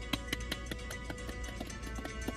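Marching band playing: brass holding sustained chords over drum strikes at about five a second.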